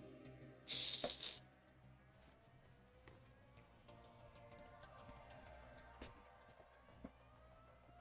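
Small metal screws rattling against a china plate used as a screw tray as they are picked through: one brief clatter about a second in, followed by a few faint light clicks.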